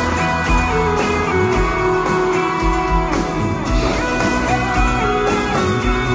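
A live band playing an instrumental break with a steady beat, led by an electric guitar playing held and sliding notes.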